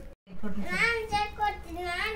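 A young child's high-pitched voice in a drawn-out, sing-song run of notes, after a split-second gap in the sound just after the start.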